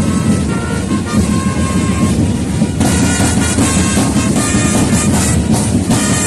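Historical drum corps playing marching drums in a steady rolling pattern, with long held notes from wind instruments above them. The drumming grows denser and brighter about three seconds in.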